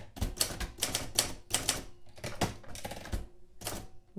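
Manual desktop typewriter being typed on: a quick run of sharp, uneven key strikes as the typebars hit the platen and type out a word.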